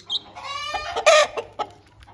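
A chicken calling once: a drawn-out call of just under a second, harshest near its end.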